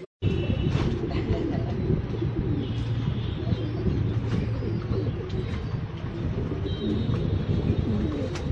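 A loft full of domestic fancy pigeons cooing: many overlapping low cooing calls at once. The sound starts abruptly just after a short dropout.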